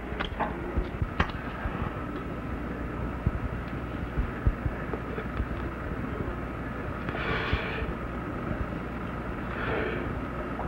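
Steady low hum and hiss of an old film soundtrack, with a few faint clicks. A short breathy hiss about seven seconds in, and another near the end, as smoke is drawn from a joint held in a roach clip.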